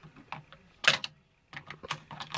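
Small hard-plastic toy pieces clicking and tapping as a clear dish cover is pressed down into the recess of a toy table: a few light ticks, a sharp click about a second in, then a quick run of clicks near the end.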